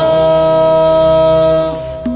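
Male voice in a shilah (Gulf Arabic chanted song) holding one long steady note at the end of a sung line; the note fades away shortly before the end.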